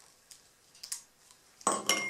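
A few faint taps, then a short ringing glass clink near the end, as a small glass jar and its lid are handled on a wooden tabletop.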